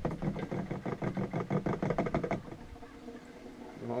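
Rapid knocking and rattling, about eight knocks a second, of a shaker siphon being jerked up and down in a plastic fuel canister, its check ball clattering as it pumps fuel oil up the hose to prime it. A little past halfway the knocking stops as the siphon catches, leaving only a faint steady sound.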